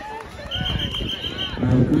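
A whistle blown in one steady, high blast of about a second, over people's voices chattering.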